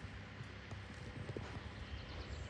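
Wacker Neuson 803 micro excavator's small diesel engine running steadily, with irregular knocks and clatter from the machine.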